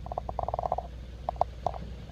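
An animal calling: a quick run of a dozen or so short pulses, then a few single pulses, over a low steady rumble of wind on the microphone.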